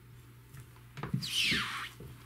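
Gloved hand digging and scraping through moist worm-bin compost in a plastic tote: a few faint soft crunches, then a brief rustling scrape about a second in.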